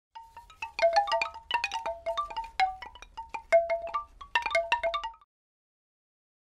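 Short intro jingle of quick, struck chime-like notes in a tumbling pattern on a handful of pitches, each ringing briefly, cutting off about five seconds in.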